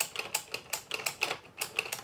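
Buttons of a paper-craft Wani Wani Panic whack-a-crocodile toy being pressed over and over with a finger, a rapid even clicking of about six presses a second, each with a short high tone. Each press registers a hit on the toy's counter.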